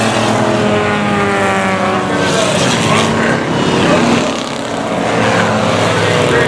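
A pack of enduro race cars running at speed around a small oval, several engines at once, their pitch rising and falling as the cars pass and come through the turns.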